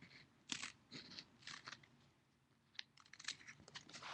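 Scissors snipping through a sheet of duct tape: a few faint, short, uneven cuts.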